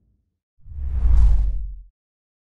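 A logo-animation whoosh sound effect with a deep rumble underneath, swelling up about half a second in, peaking and then dying away just before the end.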